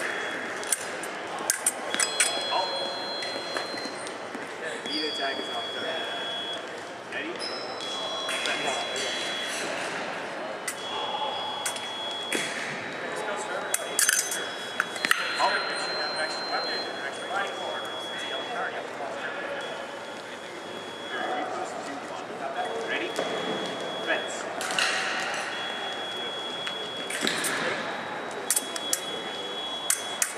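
Electric fencing scoring machines sounding a steady high beep about a second long, over and over every couple of seconds, at two slightly different pitches, from several strips at once. Sharp clicks and the chatter of a crowded hall run underneath.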